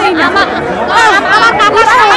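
Several women speaking loudly at once, their voices overlapping.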